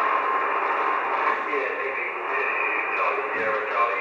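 A distant station's voice coming over HF single-sideband through the Yaesu FT-1000 transceiver's speaker: narrow and muffled, under a haze of static, with a thin steady whistle at the start.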